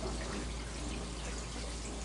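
Steady background hiss with a low hum and no distinct sound standing out.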